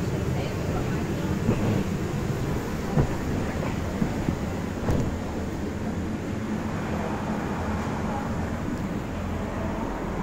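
Electric inflation blower running steadily to keep an inflatable bouncy castle up: a continuous low drone with a steady hum. A few brief knocks come in the first half.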